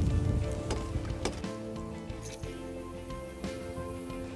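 Background music of long held notes that shift in pitch every second or so. Wind rumbles on the microphone during the first second.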